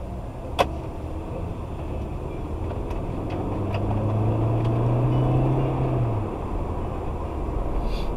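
Car driving, heard from inside the cabin: steady low engine and tyre rumble, with a sharp click about half a second in and a low hum that swells between about four and six seconds in, then drops away.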